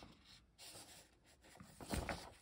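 Faint rustling of a comic book being handled, its paper pages shifting and turning, in short soft stretches.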